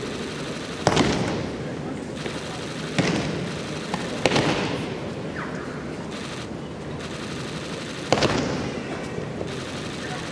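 Aikido breakfalls: four sharp slaps of bodies and hands striking tatami mats, about a second in, near three seconds, just after four seconds and after eight seconds, each echoing in a large hall over a steady crowd murmur.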